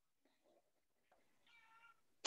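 Near silence, with a faint, brief pitched call near the end.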